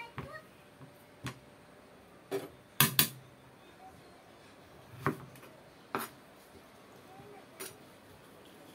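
Kitchen knife chopping a long Chinese eggplant on a plastic cutting board: about eight separate knocks at irregular intervals, the loudest pair close together about three seconds in.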